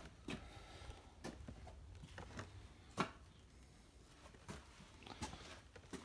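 Faint, scattered taps and clicks of a cardboard display box with a plastic window being handled and turned over, with one sharper tap about three seconds in.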